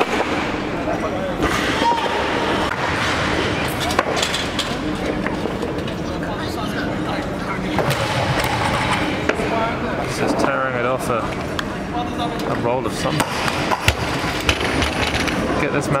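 Training-hall hubbub: many people talking at once, with a few sharp clanks of barbell plates and equipment, the loudest about 4 s and 14 s in.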